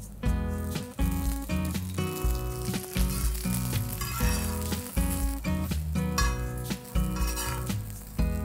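Browned onions, grated coconut and cashew nuts sizzling in fresh oil on a flat tawa while a metal spatula stirs them. Background music plays over it.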